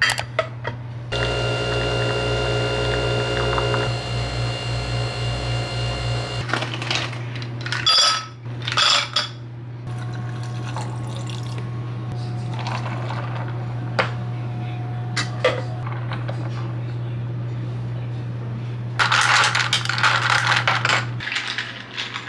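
Kitchen sounds of an iced latte being made: a coffee machine hums steadily and cuts off near the end, with a louder motor stretch in the first few seconds. Ice and glassware clink a few times around the middle, and liquid is poured into a glass near the end.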